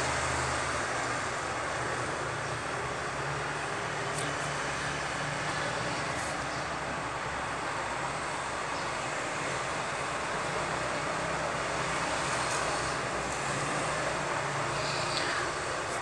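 Steady background noise, an even hiss over a low hum, with a few faint ticks.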